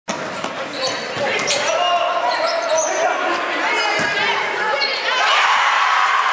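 Basketball bouncing on a hardwood gym floor, with sneakers squeaking and spectators talking in the echoing gym. About five seconds in, the crowd starts cheering as a three-pointer goes in.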